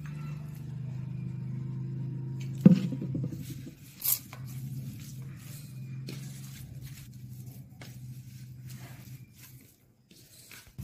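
Hands working a dry, crumbly mix of maize flour and grated radish on a steel plate, with small scrapes and crumbles and a sharp knock about three seconds in, over a steady low hum.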